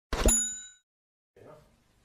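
A short cartoon pop sound effect with a bright, bell-like ring that fades within about half a second, followed about a second and a half in by a much fainter, softer sound.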